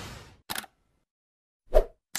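Logo-animation sound effects: a whoosh fading out, then a quick double click like a camera shutter, and a short loud thump near the end.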